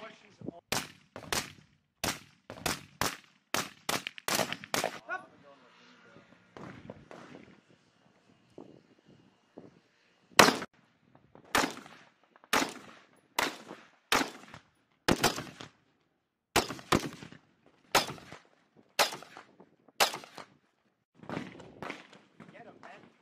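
Rifle shots from AR-pattern carbines in close-range shooting drills: a quick string of about ten shots in the first five seconds, a pause, then about a dozen more spaced roughly a second apart.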